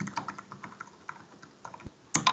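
Typing on a computer keyboard: a quick run of light key clicks as a line of text is entered.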